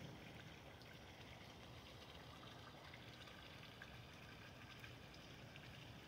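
Near silence: a faint, steady trickle of water from the pond's small waterfall.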